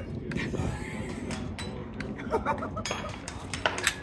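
Scattered sharp metallic clicks and clinks from a .45-calibre pre-charged air rifle's action being handled at the bench.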